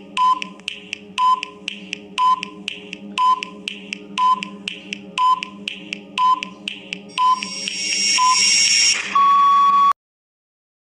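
Countdown timer sound effect: a tick with a short beep about once a second over a steady low drone, then a hiss that swells up from about seven seconds in, ending in a long buzzer tone as time runs out, cut off just before the end.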